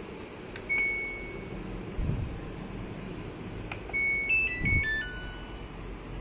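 Samsung top-load washing machine's control panel beeping as its buttons are pressed: one steady beep about a second in, then near the end a quick electronic melody of short notes stepping mostly downward. A couple of soft low thumps come in between.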